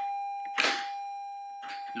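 A single steady electronic chime tone, held and slowly fading, with a short hiss-like rustle about half a second in.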